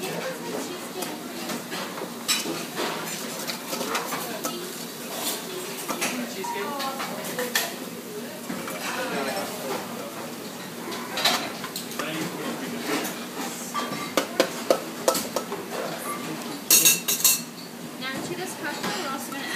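Kitchen clatter: metal utensils clinking and scraping against metal bowls, plates and containers, with kitchen staff talking in the background. A quick cluster of sharp metallic clinks comes near the end.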